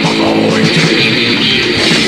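Old-school death metal played by a band: distorted electric guitars over steady drums, in a demo recording with a dull, muffled top end.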